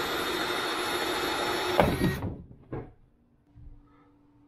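Cordless drill boring a hole through a plastic kayak hull wall, running steadily for about two seconds and then stopping with a short knock.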